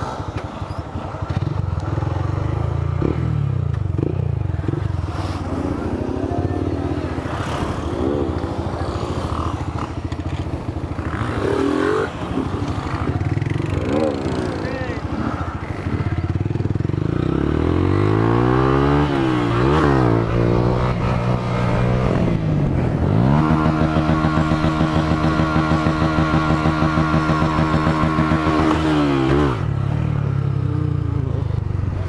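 Small motorcycle engine heard from on board while riding, revs rising and falling with the throttle, other engines rising and falling alongside in the first half. About three quarters of the way in the engine climbs and is held at a steady high rev for about six seconds, then drops off just before the end.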